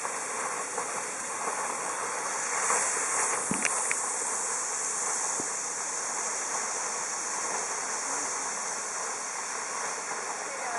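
Geyser fountain's tall water jet: a steady hissing rush of spray and falling water, swelling briefly about three seconds in, with a couple of faint clicks near the middle.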